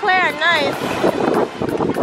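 Small waves washing onto a sandy beach, with wind rushing on the microphone; a high voice calls out with a gliding pitch for the first half second or so.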